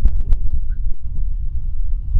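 Wind buffeting the microphone, a loud, steady low rumble, with a few sharp clicks near the start.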